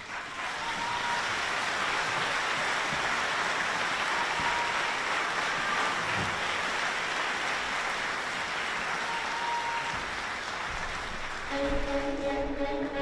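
Theatre audience applauding steadily, easing off slightly near the end, as the orchestra comes back in right at the end.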